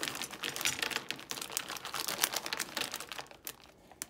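Chocolate chips shaken from a crinkling plastic bag, many small clicks as they scatter onto cookies in a glass baking dish; it stops a little over three seconds in.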